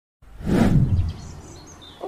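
Opening sound effect of a music video: a swell of noise that rises, peaks and fades within about a second, followed by faint high chirp-like tones.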